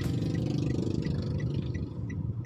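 Car running slowly, heard from inside the cabin: a steady low rumble with a light regular ticking about three times a second.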